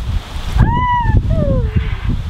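Wind rumbling on the microphone. About half a second in comes a brief high-pitched call, voice-like, that bends down in pitch and trails off lower toward the end.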